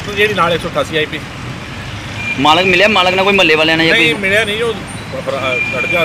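A man speaking, with street noise behind him. A steady high-pitched tone sets in about two seconds in and holds.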